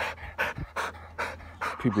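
A dog panting close by, in quick even breaths of about two or three a second.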